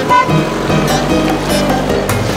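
Background music with a cartoon engine sound effect running under it as an animated monster truck drives.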